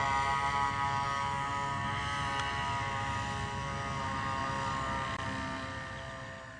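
Paramotor engine and propeller running steadily in flight, a constant pitched drone, fading out near the end.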